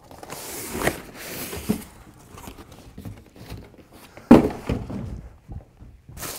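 Cardboard packaging being handled as the subwoofer's box is slid off: a scraping rustle with a couple of light knocks in the first two seconds. About four seconds in comes a single loud thump as the box is set down.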